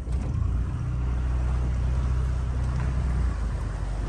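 Boat motor of a flat-bottomed aluminium boat running steadily under way, a low drone over water and wind noise, easing off about three seconds in.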